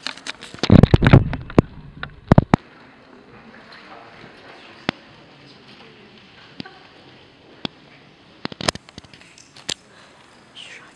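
A folding metal music stand being adjusted, a burst of loud clattering knocks about a second in, then a few sharper clicks, and after that occasional single ticks and taps.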